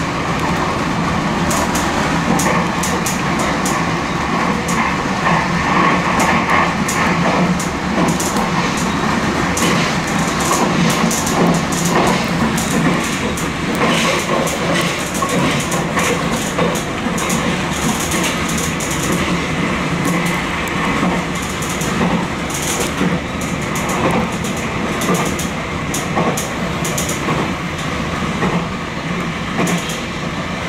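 Nankai limited express Southern electric train running at speed, heard from the front of the cab: steady running noise with a low hum, broken by irregular quick clicks of the wheels over rail joints and points.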